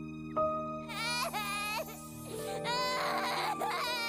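A girl's voice crying in high, wavering sobs, in two bouts starting about a second in, over soft steady background music.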